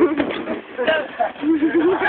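Excited voices of several people shouting and laughing, with two runs of short, quick voice pulses about four a second.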